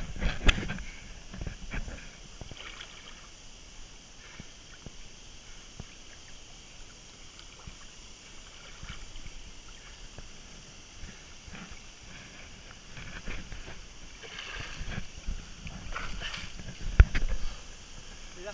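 Water sloshing and splashing around a swimmer and a hand-held camera at the surface, with louder bursts at the start and again near the end. A sharp knock comes about a second before the end.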